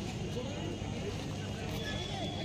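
Faint distant shouts and voices from football players and onlookers over a steady low outdoor rumble.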